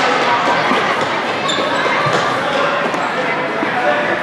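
Ball thuds and bounces of a futsal ball being played on an indoor sport court, echoing in a large gym, with a steady background of indistinct voices.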